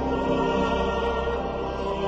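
Background choral music: voices holding long, sustained chords, changing chord near the start.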